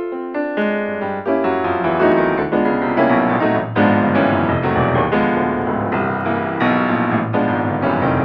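Improvised keyboard music in a piano sound: a short run of single notes, then from about a second in dense, quickly struck chords and runs, several notes a second, a little louder.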